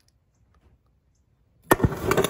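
Near silence, then about one and a half seconds in a sudden loud pop followed by a quick string of sharp crackling snaps: an Orion XTR 2500.1DZ car amplifier blowing while driven into a 0.67-ohm load on an amp dyno.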